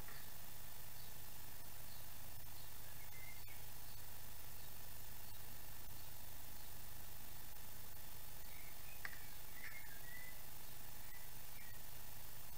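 Room tone: a steady low hum and hiss, with a few faint, brief high chirps and a soft click or two.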